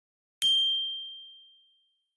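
A single bell-like ding sound effect, struck about half a second in: one high, clear tone that rings and fades out over about a second. It is the notification-bell chime of a YouTube subscribe-button animation.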